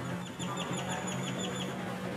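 A small bird chirping in a quick, even run of short high notes, about seven a second, which stops shortly before the end, over a steady low hum.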